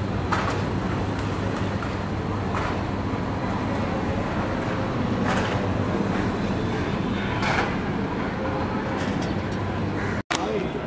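City street traffic: a steady low rumble of engines, with a few brief higher sounds cutting through it.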